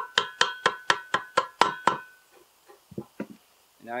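A mallet taps the top of a Suzuki DRZ400 transmission primary shaft, seating it into its bearing in the aluminium crankcase. There are about nine quick, ringing metallic strikes, roughly four a second, then a few softer knocks about three seconds in.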